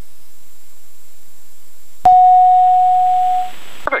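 A steady electronic alert tone in the aircraft's headset audio starts about halfway through and holds at one pitch for about a second and a half before stopping.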